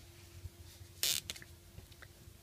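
A Sharpie permanent marker being handled and uncapped: a short hiss-like scrape about a second in, then a few faint clicks, over a faint steady hum.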